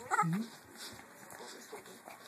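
A dog gives one short bark in play, right at the start.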